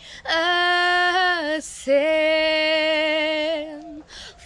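A young woman singing unaccompanied, holding long steady notes in two phrases with a short break about one and a half seconds in.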